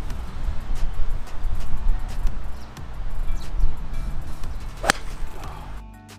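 A Mizuno 12-degree driving iron striking a golf ball off turf: one sharp crack about five seconds in, over a steady low rumble.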